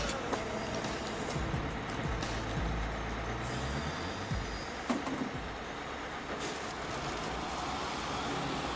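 A city shuttle bus running as it pulls in, with its engine rumbling, among street traffic, under background film music.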